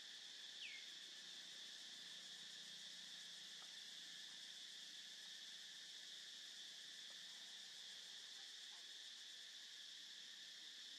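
Faint steady chorus of insects, a continuous high shrill hum. A short falling chirp comes about half a second in.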